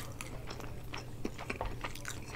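Close-miked chewing of chicken fajitas: a quick, irregular run of wet mouth clicks and smacks.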